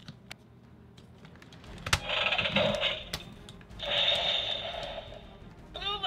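Small plastic clicks as the red lion arm is fitted onto a Legendary Voltron toy, with a sharp snap about two seconds in. Then the toy's small speaker plays two electronic sound effects, about a second each.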